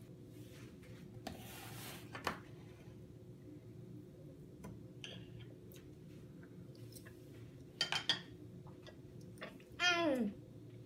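Light clinks of a metal spoon and fork against a plate, over a quiet steady room hum. A short falling voice sound comes right at the end.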